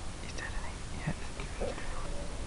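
A person whispering a few short, soft words.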